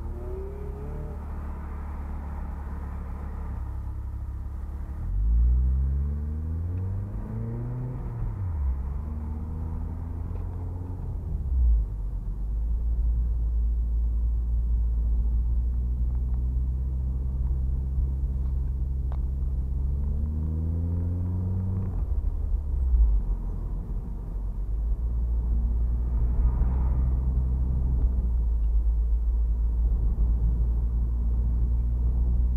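Turbocharged Mazda MX-5 engine heard from inside the cabin while driving, with a steady low road rumble. Twice the engine note climbs in pitch under acceleration and then falls back at a gear change, about six seconds in and again past twenty seconds.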